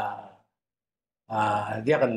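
A man speaking: his voice trails off, breaks for under a second of dead silence, then he starts talking again.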